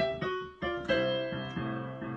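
Piano playing a short blues phrase: a few struck notes and chords that are held and left to ring, with a brief gap about half a second in.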